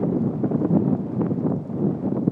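Wind buffeting the microphone: a loud, uneven rumble with no clear pitch.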